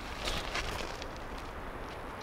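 Car moving off in the distance at night: a faint, steady rumble of engine and tyres with a few light crackles near the start.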